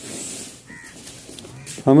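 Mostly a man's voice: a loud, drawn-out call of the name "Ahmad" begins near the end, over a low shuffling rustle before it.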